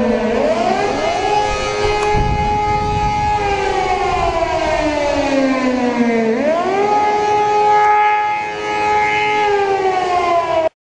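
Civil-defence air-raid sirens wailing: the pitch rises over about a second, holds, then sinks slowly, a cycle that comes round twice, with a second siren sounding out of step with the first.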